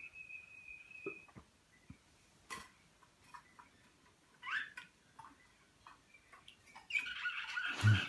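Caged finches calling: a held high whistled note ending about a second in, sparse short chirps and perch clicks through the middle, then a busier burst of twittering song near the end.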